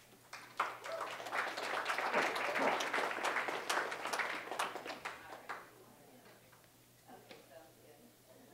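Audience clapping for about five seconds, fading out, followed by faint voices.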